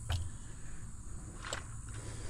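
Faint outdoor background: a steady thin high hiss over a low rumble, with one soft click about one and a half seconds in.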